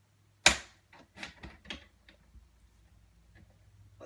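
Paper trimmer cutting cardstock: one loud, sharp snap about half a second in, then a few lighter clicks and scrapes over the next second as the blade is worked.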